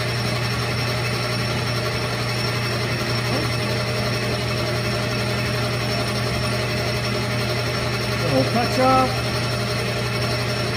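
Metal lathe running steadily while turning a steel round bar, with a constant motor and spindle hum. About a second and a half before the end, a short pitched sound with wavering pitch rises above the machine noise and is the loudest moment.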